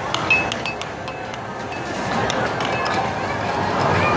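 Air hockey puck clacking against the mallets and rails of an Air FX air hockey table: scattered sharp clicks, over arcade noise and music.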